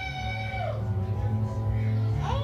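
A held electric guitar note through the stage amplifier bends down and fades out under a second in, over a steady low hum from the band's amplification.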